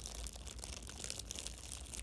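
Thin clear plastic food wrapper crinkling as the hands handle a pastry inside it, a continuous crackle of many small crackles.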